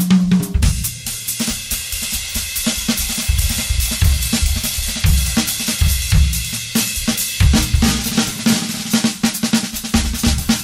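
Jazz drum kit solo from a trading-fours exchange: rapid snare and tom strokes and bass drum hits, with a cymbal ringing under most of the passage.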